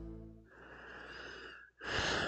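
The held closing chord of soft music fades out in the first half-second. Near the end comes a short, breathy exhale into a close microphone.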